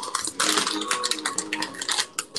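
A rapid, irregular run of small clicks and rattles, like objects being handled close to the microphone, with a faint tone underneath.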